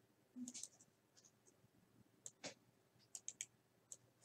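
A computer mouse's buttons clicking: about a dozen faint, sharp clicks, several coming in quick runs.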